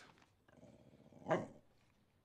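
A small dog gives one short bark about a second in.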